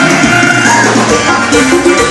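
Loud dance music with a steady rhythm and a repeating melody, playing for couples dancing.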